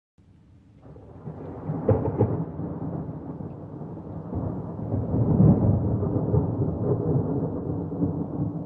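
Rumbling thunder that fades in and rolls on, with two sharp cracks about two seconds in and a louder swell a little past halfway.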